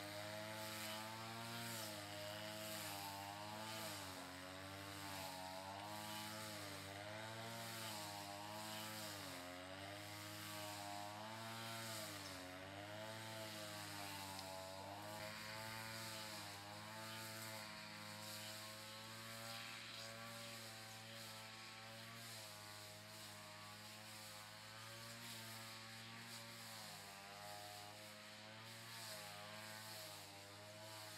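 A faint, continuous motor hum whose pitch wavers slowly up and down every second or two.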